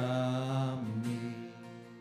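Worship song with a man singing and an acoustic guitar. A held sung note ends about a second in, and the guitar strumming rings on more quietly after it.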